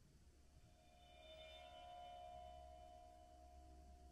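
Near silence with a faint, steady ringing tone of several pitches held together, swelling in the middle and fading near the end.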